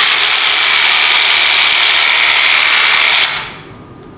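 Theragun percussive massage gun running, very loud and steady, like an electric drill. The noise starts abruptly and stops a little over three seconds in.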